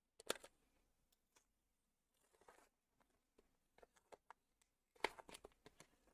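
Plastic trading-card pack wrapper crinkling and being torn open by hand, in scattered sharp crackles. The crackles are loudest just after the start and come again in a cluster near the end, with a short rasp of tearing in the middle.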